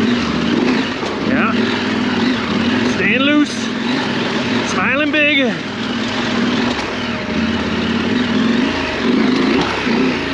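Adventure motorcycle engine running on a rough trail, its revs rising and falling with the throttle, with two brief voice sounds about three and five seconds in.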